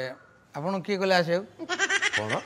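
A man's voice speaking in a drawn-out, quavering tone.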